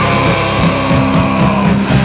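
Loud rock music from a full band, with electric guitar and bass playing a steady, dense passage.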